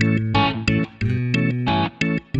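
Upbeat funk-style instrumental background music: short, rhythmic guitar strokes over a bass line.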